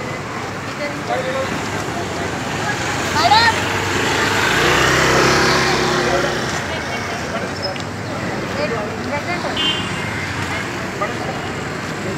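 Street traffic noise with a motor vehicle's engine passing close, growing louder about four seconds in and fading after about six, under scattered voices.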